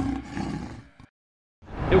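The last hit of a drum kit ringing out, a cymbal wash over a low drum tone. It fades away to silence about a second in. A man's voice begins just at the end.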